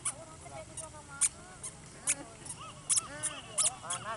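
A toddler running and kicking a small plastic ball on brick paving: irregular sharp taps, about a dozen in four seconds, with short squeaky tones that rise and fall among them.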